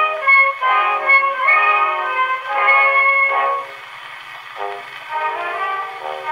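An acoustic Pathé 'The Tosca' gramophone playing a vertical-cut Pathé disc at 90 rpm: an orchestra playing a waltz, with no deep bass or high treble. The music drops to a softer passage for about a second past the middle, then comes back up.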